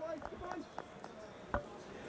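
Quiet cricket ground ambience with faint distant voices in the first second and a single sharp knock about one and a half seconds in.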